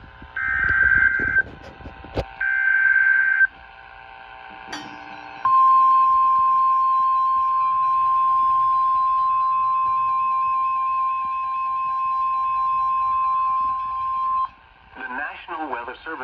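NOAA Weather Radio alert coming through an Eton weather radio: two short bursts of screechy digital SAME header data, then the steady 1050 Hz warning alert tone, held for about nine seconds before it cuts off. The sequence signals that a new warning is about to be read.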